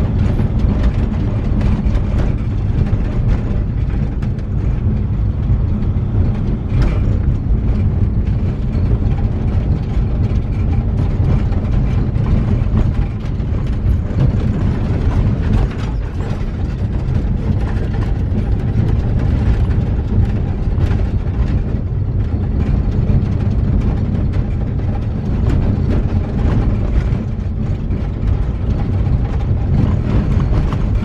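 Vehicle driving on a rough gravel road, heard from inside the cab: a steady low rumble of tyres and engine with continuous rattling and clicking as the vehicle jolts over the surface.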